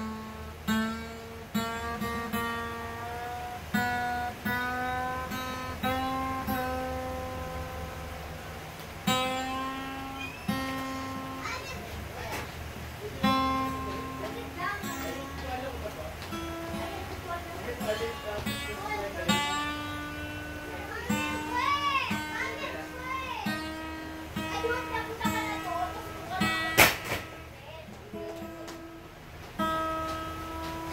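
A newly fitted high E (first) string on an acoustic guitar, plucked over and over while it is tuned up; each note rings on, and the pitch moves higher over the course of the tuning. A child's voice is heard in the background around the middle, and there is a sharp click near the end.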